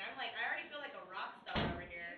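People talking, with one short, sudden thump about one and a half seconds in.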